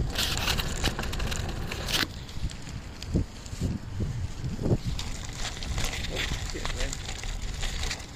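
Wind rumble and rustling handling noise on a phone microphone while riding a bicycle, loudest in the first two seconds. A few short, faint mouth sounds follow as a man puffs on a lit cigar.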